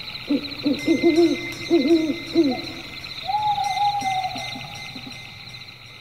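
Hooting bird calls: a quick run of short rising-and-falling hoots, then one longer falling hoot about three seconds in. They sit over a steady high-pitched trilling that fades out near the end.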